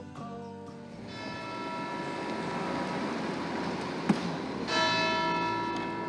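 Church bell struck twice, about a second in and again just before five seconds, each stroke ringing on in a long, slowly fading tone with many overtones. A sharp click comes just before the second stroke.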